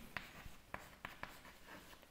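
Chalk writing on a chalkboard: faint, scattered taps and scratches as the chalk forms letters.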